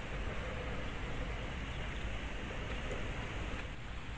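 Steady outdoor background noise: an even hiss with a low rumble underneath and no distinct event.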